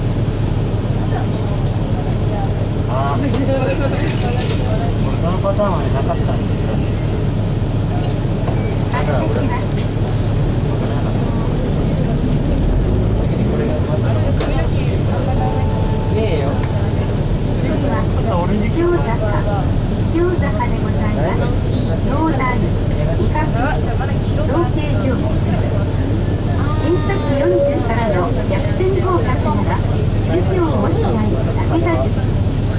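Nissan Diesel KC-RM bus's FE6E inline-six diesel running at a low, steady pitch, heard from inside the cabin. Voices are heard over it throughout.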